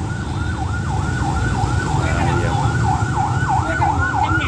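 Electronic siren in a fast yelp, its pitch sweeping down and back up about three times a second, over the low rumble of motorbike traffic.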